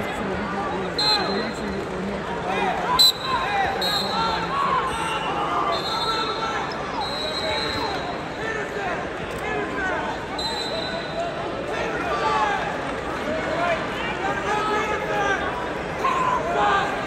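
Arena crowd noise: many overlapping voices of spectators and coaches shouting and talking across several wrestling mats, with a few short, high whistle-like tones and a single sharp thump about three seconds in.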